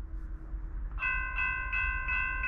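Railroad grade crossing warning bell starting up about a second in, ringing in quick, even, repeated dings of about three a second: the crossing has been activated, warning of an approaching train.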